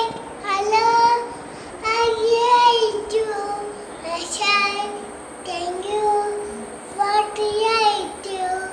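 A small child singing alone, phrases of held notes that step up and down with short breaks between them.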